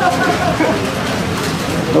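Blower fan of a cash-grab money booth running, a steady rushing of air with paper bills fluttering inside the glass enclosure.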